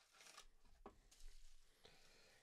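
Faint rustling of packaging, with one small click a little under a second in, as a bubble-wrapped folding knife is slid out of its cardboard box.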